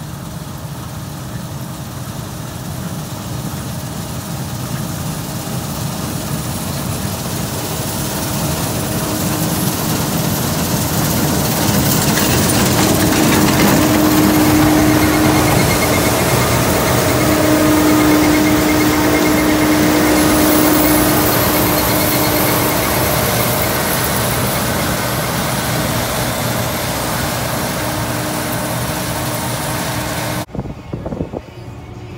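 Combine harvester running while harvesting soybeans: steady engine and threshing machinery that grow louder as it comes close and passes, with a held whine at the loudest point, then ease slightly as it moves away.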